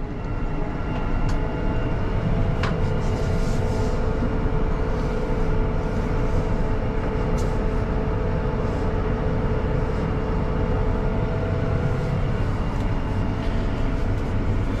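Deutz-Fahr 8280 TTV tractor's six-cylinder engine heard from inside the cab while driving at about 9 mph, held down near 1000 rpm by the automatic transmission mode for fuel economy. It is a steady low rumble with a steady whine over it, and two faint clicks in the first few seconds.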